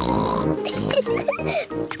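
A cartoon pig character's oinking snorts over background music.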